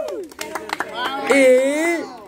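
A team celebrating a win: a few hand claps and shouts in the first second, then a loud, drawn-out shout in the second half.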